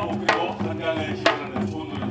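Korean pungmul folk percussion music, with sharp drum strikes about once a second ringing over a steady, busy rhythmic background.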